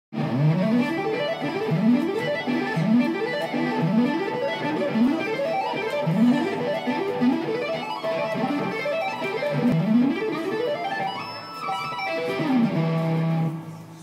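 Amplified electric guitar played with two-hand tapping: fast pentatonic runs at four notes per string, sweeping up and down the neck in quick repeated passes. It ends on a held low note that stops just before the end.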